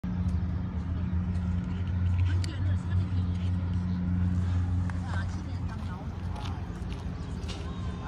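A low, steady engine hum that fades away a little past halfway, with voices talking in the background and a few light clicks.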